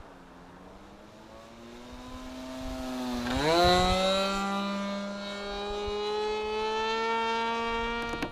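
Radio-controlled model airplane's engine in flight: a faint steady drone that, a little over three seconds in, quickly rises in pitch and gets louder, then holds a high, steady buzz.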